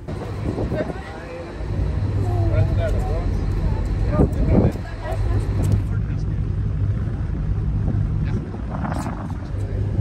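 A boat's engine running with a steady low rumble that grows louder about a second and a half in, with people's voices over it.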